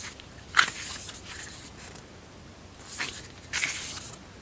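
Pages of a paper booklet being turned by hand: three brief rustles, the loudest about half a second in and two shorter ones near the end.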